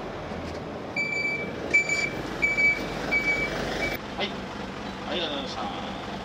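City route bus pulling up at a stop with its engine running, sounding five evenly spaced high electronic warning beeps as it stops and opens its doors; then the engine idles with a steady low hum.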